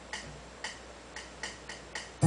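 Fast count-in of six sharp ticks: two about half a second apart, then four twice as quick, a quarter-second apart.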